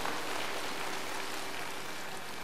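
Steady background hiss with a faint steady hum, slowly easing off: the ambience of a large seated crowd under a pavilion.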